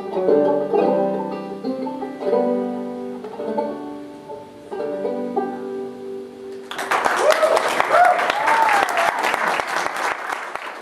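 Banjo played solo, picking the last phrases of a song and ending on a held, ringing chord. About seven seconds in, audience applause breaks out, with a voice calling out over it.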